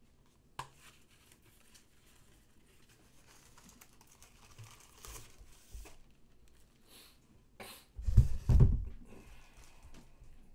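Paper and cardboard rustling and crinkling as a cardboard poster tube is opened and the rolled poster handled. There is a sharp click about half a second in, and a few heavy, dull thumps near the end.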